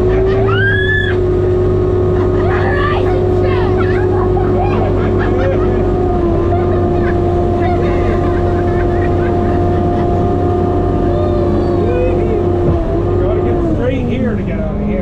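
Sherp ATV's diesel engine and drivetrain heard from inside the cabin, running at steady high revs with a deep hum and a held whine, stepping down slightly about halfway and dropping in pitch near the end as it eases off. A girl laughs and squeals early on.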